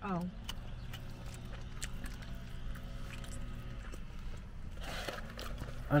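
Quiet chewing and small mouth clicks while eating a burger, over a steady low hum in a car's cabin, with a brief rustle about five seconds in.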